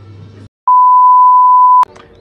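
A single loud, steady electronic beep at one pitch, about 1 kHz, sounds for just over a second and ends abruptly with a click. Just before it, background music cuts off into a moment of silence.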